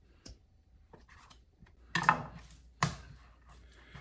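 Quiet handling of a knife and raw steak on a wooden cutting board: a short scrape about two seconds in, then a sharp knock just before three seconds as the boning knife is set down on the board.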